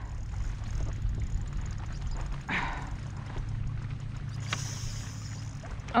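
Steady low rumble of wind and choppy lake water around a kayak, with one short, brief rush of sound about two and a half seconds in.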